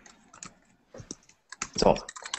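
Typing on a computer keyboard: a few irregular key clicks.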